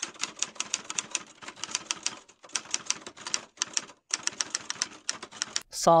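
Typewriter sound effect: a rapid run of key clicks, about eight a second, broken by two brief pauses.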